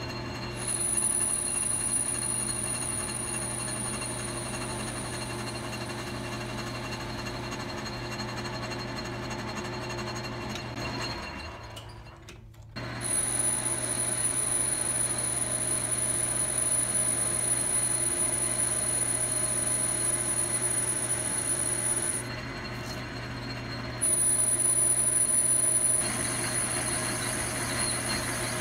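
A 10-inch Logan metal lathe running and turning a 2-inch aluminium bar: a steady motor and drive hum with a high, thin whine as the tool takes passes. The sound dips briefly about halfway through, then runs on, and is a little quieter for a couple of seconds near the end.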